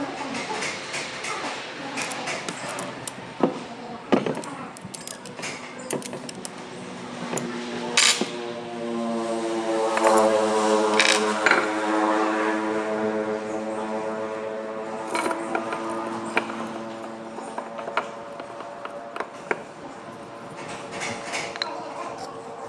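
Light metal clicks and clinks from engine parts being handled on a small Honda 110cc motorcycle engine. A held musical chord swells in about a third of the way through and fades out before the end.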